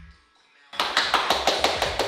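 A single person clapping their hands rapidly and evenly, about six claps a second. The claps start after a short lull near the start, once the song has stopped.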